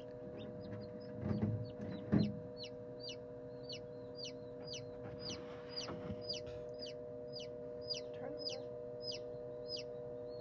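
Newly hatched Lavender Ameraucana chick peeping: a steady string of short, high, downward-falling peeps, about two or three a second, over a steady hum. Two dull thumps come about one and two seconds in.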